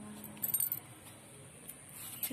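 A brief metallic jingle of small clinking metal pieces about half a second in, over a steady high-pitched whine.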